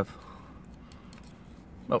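Faint light scraping and small clicks of a razor-blade scraper working old gasket residue off the aluminium gasket face of a GY6 scooter cylinder.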